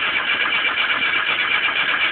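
Rear-mounted engine of an old car running loud and steady with its engine lid open; it comes in abruptly just before this moment.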